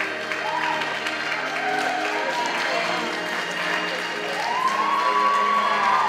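An audience applauding, with some cheering, over music playing.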